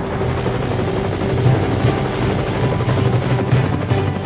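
Light helicopter running on the ground, a steady high whine over the regular beat of its rotor.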